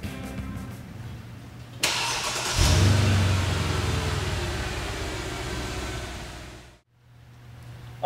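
Mercedes-Benz GL450's 4.7-litre V8 being started: a sudden burst about two seconds in, then the engine catches with a loud flare of revs that slowly dies down towards idle.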